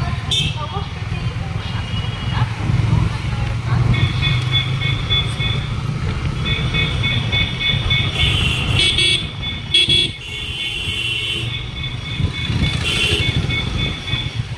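Motorcycle running along a busy town street, its engine and road noise a steady low rumble, while vehicle horns toot repeatedly in high, piercing tones from about four seconds in.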